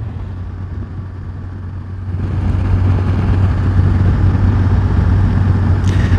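BMW R 1200 GS motorcycle's flat-twin engine running at cruising speed with wind rush over the rider. The wind noise grows louder and brighter about two seconds in.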